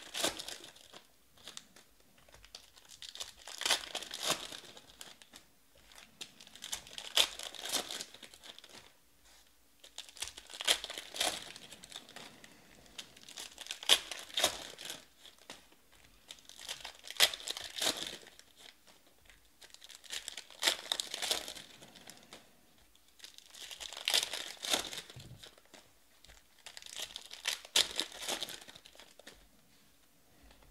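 Foil Panini Prizm baseball card packs torn open and crinkled one after another, a burst of crackling wrapper about every three and a half seconds, nine in all.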